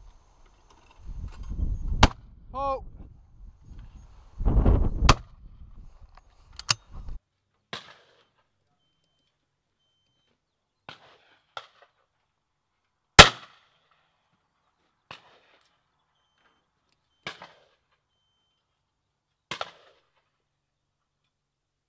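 Shotgun shots at a clay range. There are three sharp reports over low wind rumble on the microphone in the first seven seconds, then one very loud close report about two-thirds of the way through, with fainter, more distant shots scattered between.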